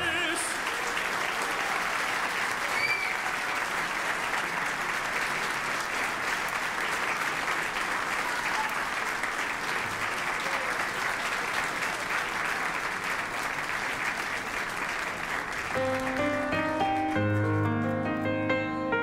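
Audience applauding steadily after a sung performance. About sixteen seconds in, the applause gives way to the notes of the next piece of music.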